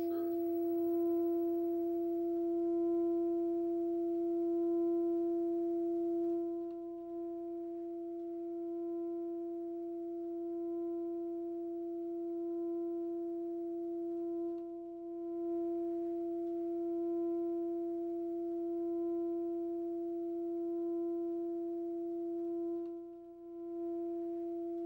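A steady mid-pitched humming tone with faint overtones, swelling and fading gently every couple of seconds, with a few brief dips in level.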